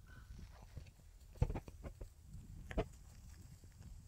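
Footsteps of a person and a dog walking on a dirt path strewn with dry leaves: soft scattered steps, with two sharper knocks about a second and a half apart.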